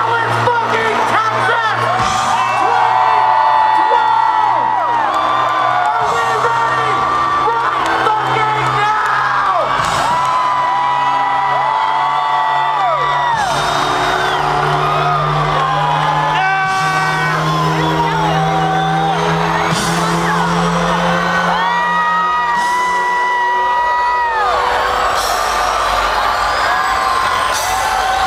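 Loud electronic DJ set music from the PA, with sustained bass notes and a dense concert crowd whooping and yelling over it throughout.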